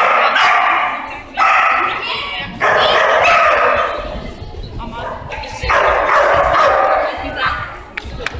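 A dog giving long, high-pitched excited cries, four of them, each lasting about a second, starting suddenly with short breaks between.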